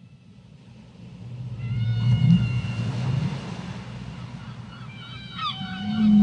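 A low rumbling drone that swells up out of silence, loudest about two to three seconds in, with thin steady high tones over it and a few short gliding pitches near the end: a sound-design intro to an electronic track.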